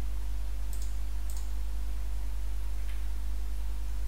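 Steady low electrical hum from the recording background, with a few faint short clicks in the first three seconds.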